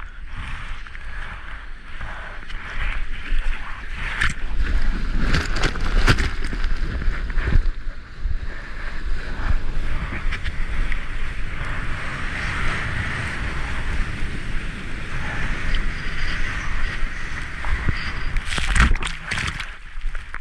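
Ocean surf and rushing, splashing water close to the microphone as a surfboard moves through choppy waves, with wind buffeting the microphone and a deep rumble. Sharp louder splashes come about four seconds in, again around six to seven seconds, and twice just before the end as whitewater washes over.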